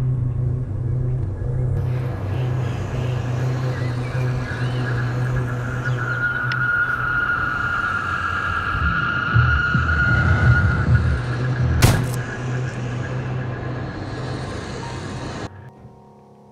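Horror-film score and sound design: a steady low rumbling drone with a high eerie tone swelling over it in the middle, a single sharp crack about twelve seconds in, then the sound fades and cuts off just before the end.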